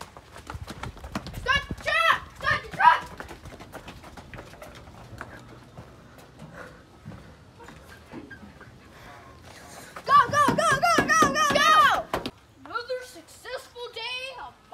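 Children's voices with scattered knocks and clatter as kids clamber into a pickup's truck bed, then a long, loud child's yell about ten seconds in.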